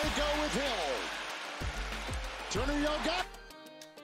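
Audio of a televised NFL highlight: speech with music under it, dropping to a brief near-silence just before the end as the playback is skipped back.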